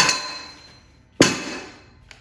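Two metal clanks about a second apart, each ringing out briefly: square steel tubing knocking against a steel frame as it is handled and set down.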